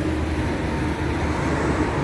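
Steady road traffic noise from passing cars, an even low-pitched hum with no single event standing out.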